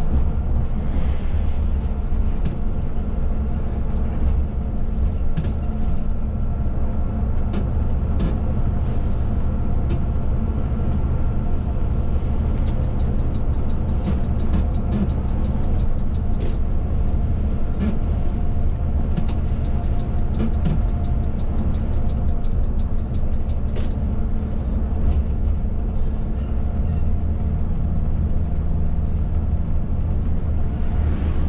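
Volvo B9R coach's diesel engine running steadily at cruising speed, heard from inside the driver's cab with road noise. Scattered short clicks and rattles sound throughout.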